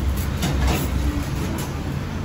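Steady low rumble of eatery background noise, with a couple of faint clicks about half a second in.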